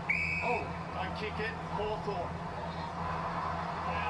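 Faint football television commentary from the match broadcast over a steady low hum, with a brief high steady tone at the very start.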